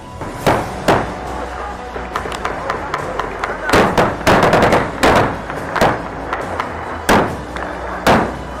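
Gunfire in a firefight: sharp shots at irregular intervals over a loud, noisy background, with a dense run of shots around the middle.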